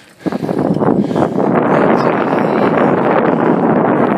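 Wind buffeting the microphone while cycling: a loud, steady rush that starts abruptly.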